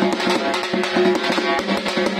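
Funeral drum band playing: fast, dense beating on large bass drums and round parai frame drums, with a melody line held over the rhythm.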